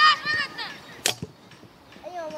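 A high-pitched shout, then about a second in a single sharp thud of a football being kicked.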